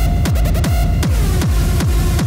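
Hard techno with a heavy kick drum pounding about three times a second, each hit dropping in pitch, under a sustained high synth tone.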